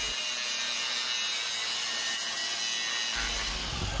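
Angle grinder running steadily against the steel rear axle housing, a continuous high-pitched grinding hiss as the disc cleans up the housing where the factory shock mounts were cut off.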